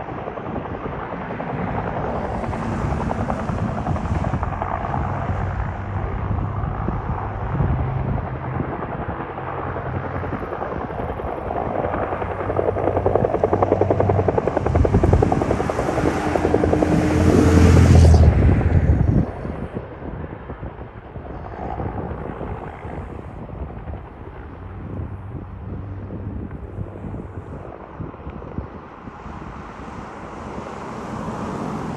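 Firefighting helicopter flying nearby, its rotor and engine drone building to its loudest about two-thirds of the way through, then dropping away suddenly to a quieter rumble.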